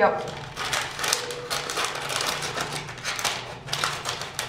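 Parchment paper on a baking tray rustling and crinkling as cookie dough is handled, a dense run of small crackles and clicks.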